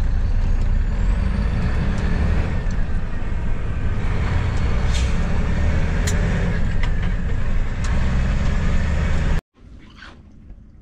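Mack semi-truck's diesel engine running and road noise heard inside the cab as the truck drives, with a few faint clicks; it cuts off suddenly near the end.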